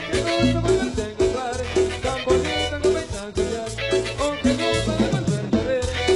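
Tropical dance music from a marimba orchestra, with a steady beat, a strong bass line and short repeated melody notes.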